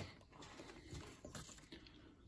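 Near silence: room tone with faint handling sounds.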